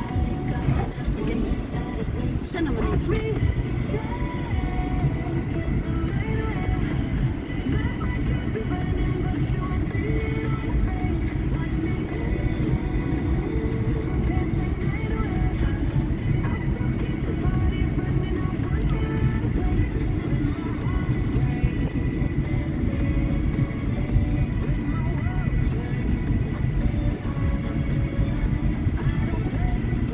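Steady low rumble of road and engine noise inside a moving car's cabin, with music that has singing playing over it.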